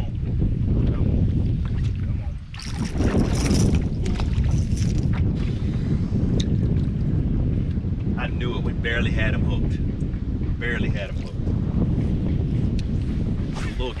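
Wind buffeting the microphone as a steady low rumble, with a brief rush of hiss about three seconds in.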